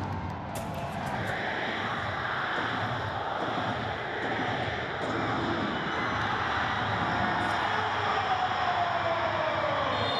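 Football stadium crowd cheering and building slightly in loudness in the seconds before kick-off, with a long tone sliding down in pitch over the last few seconds.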